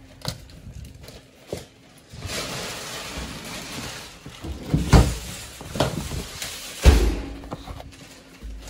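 Groceries being stowed in a stainless French-door refrigerator: a stretch of rustling from plastic-wrapped meat packages, then a freezer drawer shut and a fridge door opened, with several thunks, the loudest about five and seven seconds in.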